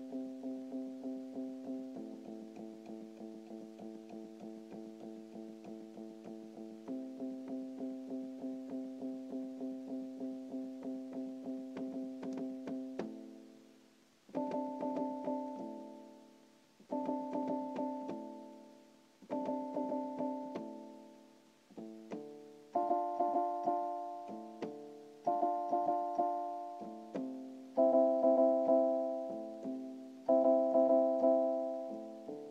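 Electronic keyboard playing chords solo in a piano voice. For the first half it plays rapidly repeated chord notes, about three a second. From about halfway it strikes single chords every couple of seconds and lets each ring out, growing louder toward the end.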